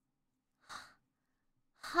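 A woman's short, breathy sigh about two-thirds of a second in, then near the end the start of her questioning "Huh?" with rising pitch.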